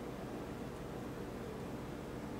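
Steady low hum and hiss of background noise, even throughout, with no distinct event.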